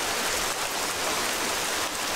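Heavy rain pouring steadily, an even hiss of drops splashing on the ground.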